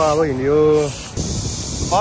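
A man's voice drawing out one word for about a second, over a steady high hiss. The hiss carries on alone after the voice stops.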